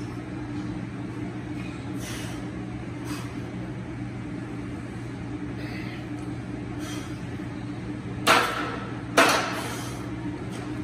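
A 225-lb barbell is racked onto the steel hooks of a power rack: two loud metal clanks about a second apart near the end, each with a short ring. Before them there are faint exhalations on the reps over a steady low hum.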